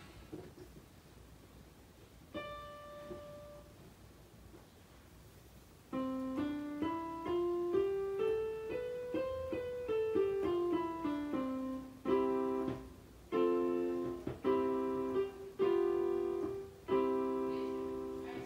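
Electronic keyboard with a piano sound: one note struck about two seconds in, then a C major scale played up one octave and back down, followed by a series of block chords.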